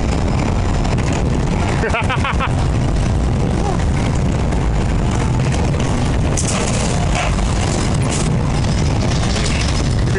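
Steel wild mouse coaster car running along its track, a steady loud rumble of wheels and wind on the onboard microphone. A short voice is heard about two seconds in.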